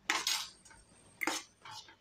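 Spatula scraping along the bottom of a pan while stirring a thick masala paste: a short scrape at the start, another about a second later, and a fainter one near the end.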